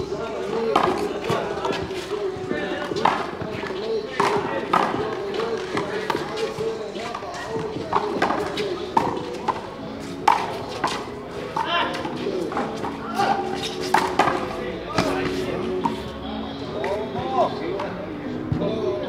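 A handball rally: sharp, irregular smacks of a small rubber ball struck by hand and rebounding off a concrete wall, about a dozen over the stretch, over background voices and music.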